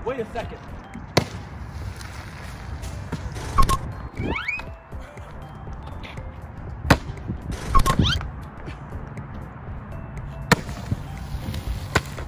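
Three sharp pops several seconds apart, among excited rising shouts and whoops, with background music underneath.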